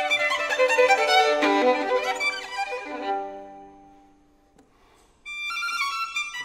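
Solo violin playing a virtuoso passage of quick notes and double stops that dies away about four seconds in to a brief near-silent pause, then comes back with a held high note just after five seconds.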